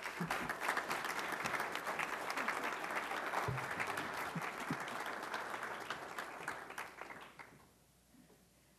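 Audience applauding, a steady patter of many hands clapping that fades away near the end.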